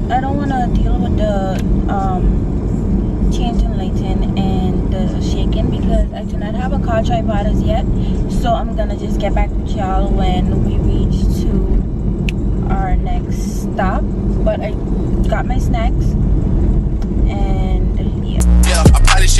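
Car cabin noise while driving: a steady low road and engine rumble, with a woman's voice talking on and off over it.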